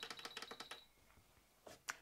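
Quick run of faint small clicks for under a second, then two light taps near the end: fingers handling an electronic sewing machine as its stitch length is set.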